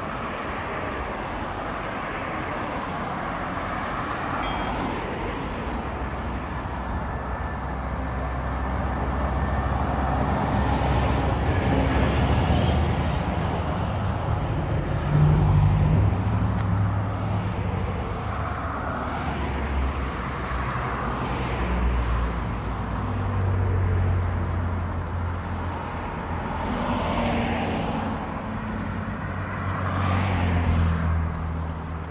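Road traffic passing close by: cars and trucks going by one after another, the sound swelling and fading with each pass. A truck engine's low steady running sound comes in about halfway through.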